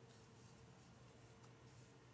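Near silence: the very faint scratchy rustle of a crochet hook pulling cotton yarn through stitches, over a steady low room hum.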